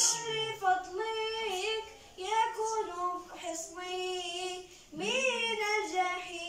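A boy singing Moroccan madih (devotional praise song) solo and unaccompanied, in long ornamented phrases with short breaths between them about two seconds in and again near the end.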